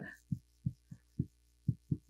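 Dry-erase marker writing on a whiteboard: a run of short, dull taps at irregular spacing, a few per second, as the letter strokes press on the board, over a faint steady low hum.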